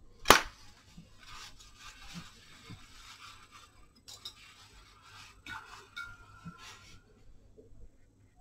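A sharp knock as a painting tool is set down on the work table, then faint scraping, rustling and light clinking as art tools are handled, with a brief thin squeak about two-thirds of the way through.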